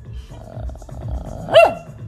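Shih Tzu puppy giving a short yip that rises and falls in pitch about one and a half seconds in, after a faint low grumble.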